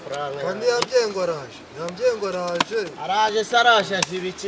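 A voice chanting in short repeated syllables. Three sharp knocks cut through it in the first part.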